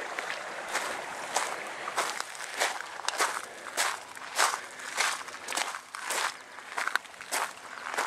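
Footsteps of a person walking on a gravel and dirt rail bed, evenly paced at a bit under two steps a second. The steps start about half a second in.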